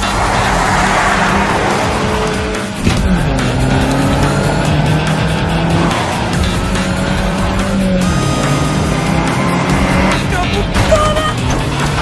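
Audi A4 saloon's engine revving up and down as the car slides sideways on a dirt track, tyres skidding on the loose surface, with a music score underneath.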